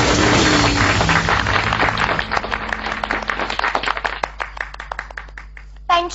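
Dance music playing and ending about two seconds in, giving way to audience applause that gradually dies away.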